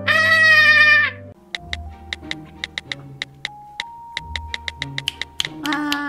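A squeaky, high-pitched cartoon character voice for about a second, then light background music of held notes over a quick, uneven run of ticks; another squeaky character voice comes in near the end.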